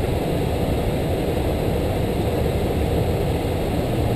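Steady cockpit noise of an Airbus A330-300 in flight: a constant low rushing with no changes.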